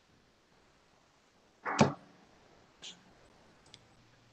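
A lull on an online meeting's open microphones, broken about halfway by one short, sharp noise, then a fainter soft puff and a tiny click.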